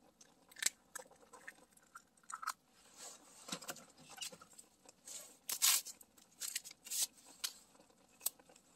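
An egg cracked and broken open over a pot of boiling ramyeon, heard as quiet scattered clicks and crackles. A few sharper crackles come about five and a half to seven seconds in.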